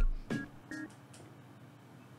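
Two short electronic beeps, one after the other within the first second.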